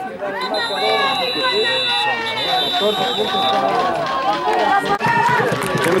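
Many voices of football players on the sideline, talking and calling out over one another. A steady high-pitched tone sounds from about half a second in for around three seconds, with a short break in the middle.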